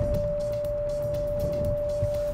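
A single steady tone at one unchanging pitch, over the low rumble of the 2023 Kia Telluride X-Pro moving over dirt, heard inside the cabin.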